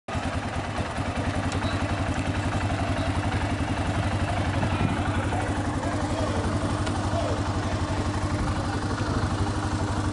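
Police ATV engine idling close by, a steady, rapid low pulse that runs evenly throughout. Faint voices in the background.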